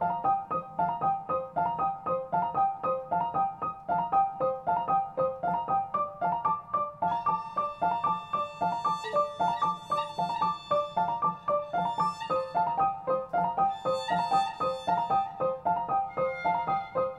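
Digital piano playing a repeating broken-chord figure in steady, even notes. A violin comes in about seven seconds in, playing long held notes over it.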